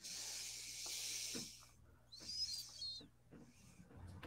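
Two faint, breathy hisses, like air exhaled through the mouth or nose close to a headset microphone: the first lasts about a second and a half, the second is shorter, about two seconds in, with a slight whistle in it.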